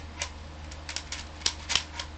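Plastic clicks and clacks from an Air Warriors Walking Dead toy shotgun, a foam dart blaster, as darts are loaded into it: a run of short, sharp clicks, the loudest two near the end.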